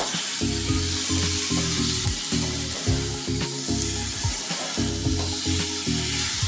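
Vegetables and leafy greens sizzling in a wok while a metal spatula stirs them, with a few sharp scrapes and clicks of the spatula, under background music.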